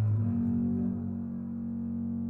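Double bass, a 1994 Grunert, in a live concerto performance: moving low bowed notes give way, about a quarter second in, to a long held higher note that sustains steadily.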